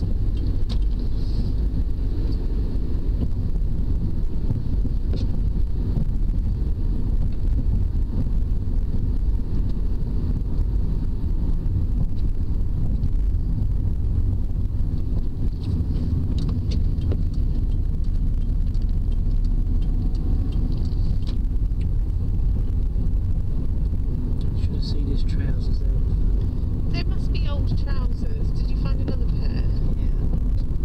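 Steady low rumble of a moving car heard from inside the cabin: engine and tyre road noise. Faint small ticks and squeaks come in over it near the end.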